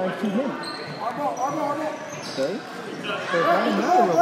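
Basketball being dribbled on a hardwood gym floor, with several voices of players and spectators calling out over it.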